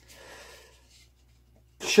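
A short click, then a faint rub of hands on a wooden bowl as it is turned over, fading out after about a second.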